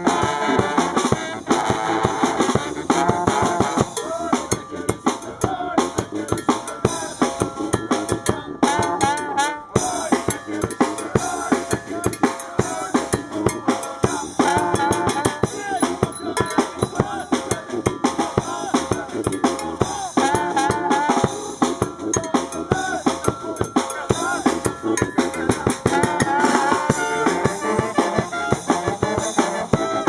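Brass band playing an up-tempo tune: saxophones, trumpets, trombones and a sousaphone over a driving Pearl drum kit, with snare and bass drum prominent.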